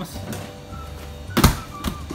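A sharp thunk about one and a half seconds in, with a lighter knock about half a second later, over faint background music.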